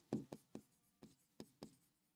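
Faint taps of a stylus writing on a digital board: about six short ticks spread unevenly across two seconds.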